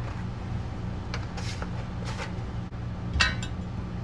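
An aluminium diamond-plate box being handled on a workbench: soft scuffs, then a short ringing metallic clink near the end. A steady low hum runs underneath.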